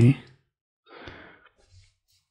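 A man's breath out, a short sigh about a second in, after the tail of a spoken word.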